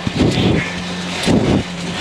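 Citroën C2 rally car at speed on gravel, heard from inside the cabin: the engine holds a steady note, over loud tyre and gravel noise that surges briefly about half a second in and again after a second and a quarter.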